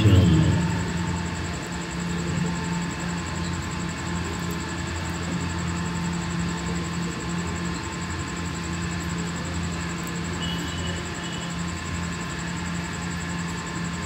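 Steady low hum and room noise from a microphone and sound system during a pause in Quran recitation, with the last recited note fading out just after the start.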